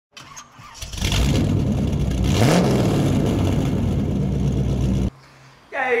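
An engine starting and revving, with a short rise in pitch partway through, then cutting off abruptly about five seconds in.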